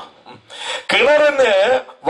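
A man's voice through a microphone, starting about half a second in and drawn out for over a second, its pitch dipping and rising.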